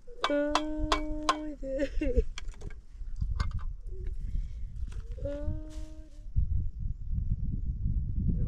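A goat bleating twice, a long quavering call near the start that drops in pitch as it ends, then a shorter one about five seconds in. A low rumbling noise follows in the last couple of seconds.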